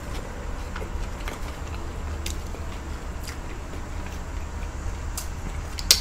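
Chewing on onion pieces, with a few soft mouth clicks over a steady low background rumble. A sharp click comes near the end.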